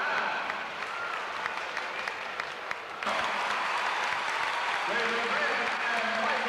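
Gymnasium crowd applauding and cheering a dunk, with voices shouting through the clapping; it gets suddenly louder about halfway through.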